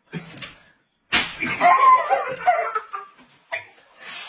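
A sharp slap, likely a plastic paddle striking a person, about a second in, followed by about a second and a half of loud, wavering high-pitched sound.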